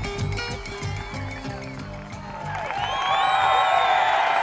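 Rock music playing, thinning out about two seconds in, then a growing din of many overlapping voices, like a crowd cheering, rises over the last part.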